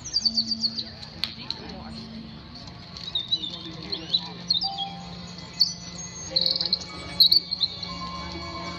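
Small birds chirping: quick, high, sweeping calls in clusters, over a faint low steady hum.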